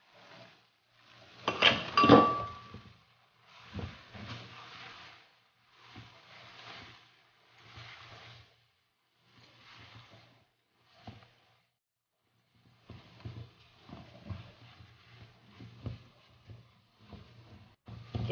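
Silicone spatula stirring and scraping a thickening milk-powder and butter mixture in a nonstick frying pan, in short irregular strokes with brief pauses. About two seconds in there is a louder clatter with a short ring.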